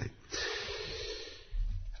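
A man's audible in-breath, close to the microphone, lasting about a second and taken in a pause in his speech.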